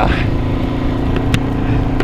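Touring motorcycle riding at a steady speed: a constant engine hum over low rumble, with no revving.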